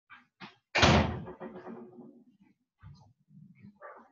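A single loud bang about a second in that rings out briefly, like a door slamming in the room, followed by a few faint knocks and clicks.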